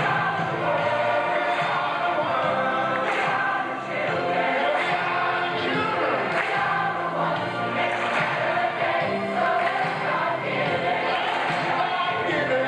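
A mixed group of men and women singing together as a choir, with music behind them and a steady beat.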